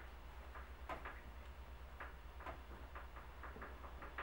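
Faint, irregular light clicks and taps, about a dozen in four seconds, over a steady low hum.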